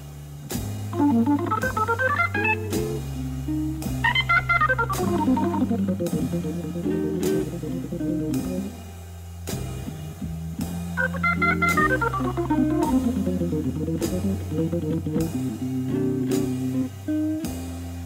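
Slow blues played by a jazz combo. A Hammond organ holds bass notes and chords under an electric guitar, fast runs climb and fall through the upper register, and drums keep time.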